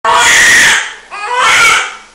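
Newborn baby crying loudly in two long wails, the second starting about a second in.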